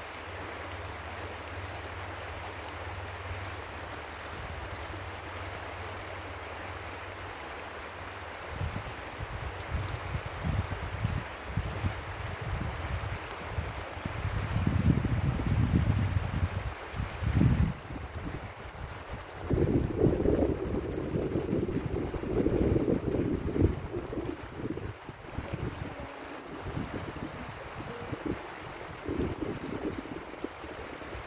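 Steady rush of a shallow river flowing over gravel, with wind buffeting the microphone in gusts from about eight seconds in, loudest in the middle of the stretch.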